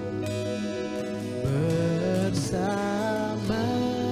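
Worship band playing a slow song on acoustic guitar, electric guitar, bass guitar and keyboard, with a male lead voice singing in Indonesian from about a second and a half in.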